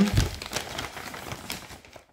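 Rustling and light clicking of trading-card starter-pack packaging being handled as its contents are taken out, fading toward the end.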